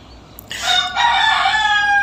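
A rooster crowing once: a single loud call that starts about half a second in, steps up in pitch, then holds and falls slightly for about a second and a half.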